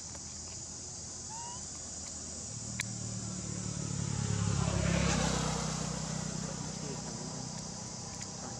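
A motor vehicle passing by, building to loudest about five seconds in and then fading, over a steady high drone of insects.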